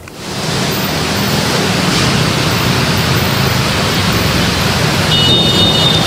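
Dense road traffic, mostly motorcycles and cars on a busy city street, picked up as a steady wash of noise on a roadside microphone. It fades in over about the first second and then holds steady.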